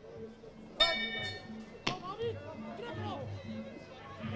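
A ring bell is struck once about a second in, ringing briefly to signal the start of the round. A single sharp crack follows about a second later, over shouting from the arena crowd.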